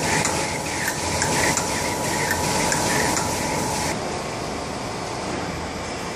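XY-TQ-G high-speed toilet-paper colour-gluing slitting machine running, the tissue web feeding over its rollers with a loud, steady mechanical noise. A steady whine and a regular beat run with it and stop about four seconds in, leaving the steady running noise.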